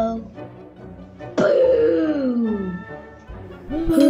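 Cartoon sound effect: a pitched sound with a sudden start that slides steadily downward for over a second, beginning about a second and a half in, as the character is left dizzy. Music with a wavering melody comes in near the end.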